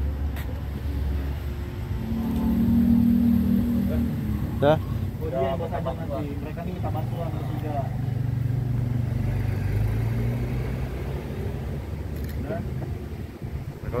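A motor vehicle engine running steadily, its low hum shifting in pitch partway through, with brief indistinct voices about a third of the way in.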